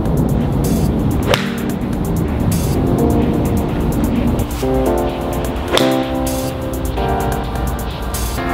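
Background music with a steady beat, over which a TaylorMade P790 nine-iron strikes a golf ball twice with a sharp click, about a second in and again near six seconds.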